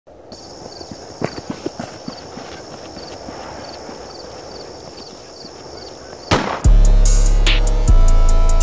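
Quiet outdoor ambience with a steady high insect chirping pulsing about twice a second and a few scattered knocks. About six seconds in, a loud hit comes, then a hip hop beat with deep 808 bass starts.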